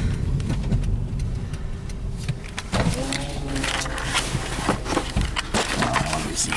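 Car driving, heard from inside the cabin: a steady low engine and road rumble. In the second half come irregular clicks and knocks.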